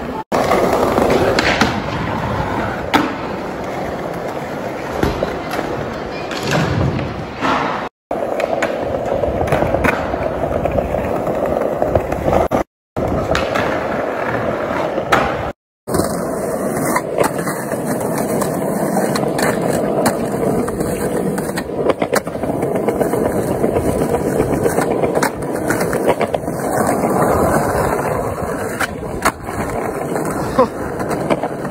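Skateboard wheels rolling on concrete, with sharp cracks and slaps of the board popping and landing during tricks. The sound breaks off abruptly a few times where short clips are joined.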